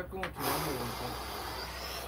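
A man's long, strained, breathy exhale with a faint voiced groan in it, lasting about a second and a half, from someone squeezing through a tight gap.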